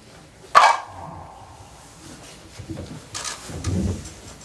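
A single sharp stroke on a sogo, a small Korean hand drum, about half a second in, its ring fading over about a second. A second, lower-pitched sound follows near the end.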